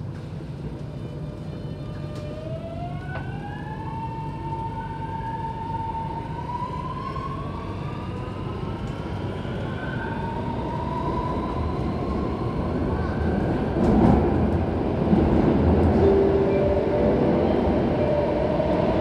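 Inside the carriage of an Alstom Metropolis C751C metro train pulling away and accelerating: the traction motors whine in several tones that climb steadily in pitch. Under the whine, the rumble of wheels on rail grows louder as the train gathers speed, loudest in the last few seconds.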